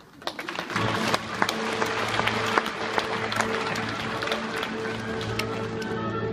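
Theatre audience applauding, starting suddenly and then clapping steadily, over an orchestra that keeps sounding underneath.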